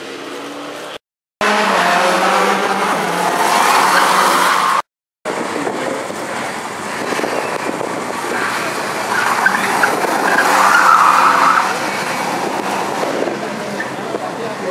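Porsche 944 rally cars' four-cylinder engines revving hard through a bend and accelerating away, with tyres squealing. The sound breaks off twice for a moment where short clips are joined.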